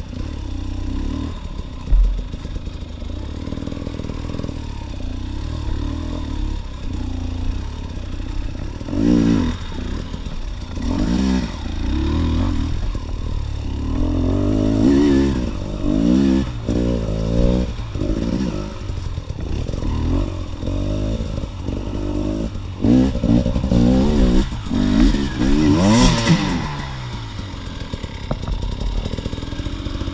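Fuel-injected two-stroke engine of a KTM EXC TPI dirt bike, heard from the rider's position, revving up and down over and over as the throttle is opened and closed. Through the middle and later part the pitch rises and falls in quick repeated sweeps. Intermittent knocks and rattles come from the bike's chassis.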